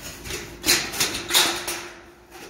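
Light-gauge steel framing (stud and track) being handled by a gloved hand: about four short scraping knocks of metal on metal, in the second half of the clip.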